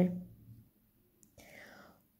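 A woman's voice trailing off at the end of a word, then quiet broken by a faint, short breathy rustle about a second and a half in.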